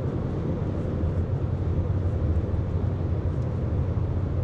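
Steady low rumble of a car driving at motorway speed, heard from inside the cabin: tyre and engine noise.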